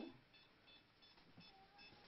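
Faint, short, high electronic beeps, about three a second, in a near-silent room.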